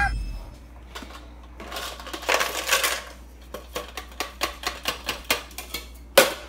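Small plastic toy pieces clicking and clattering as they are handled on a tabletop: a denser rattle about two seconds in, then a run of separate light clicks.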